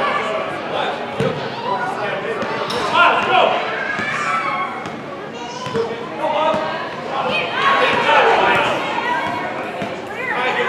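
Indoor soccer in a large echoing hall: overlapping voices of players and onlookers calling out, with a few sharp thuds of the soccer ball being kicked.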